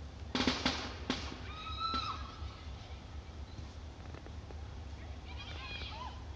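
Girls' soccer players screaming and shrieking out on the field, heard from a distance: a burst of shouts about half a second in, a short high-pitched cry around two seconds in, and fainter cries near the end. A steady low rumble runs underneath.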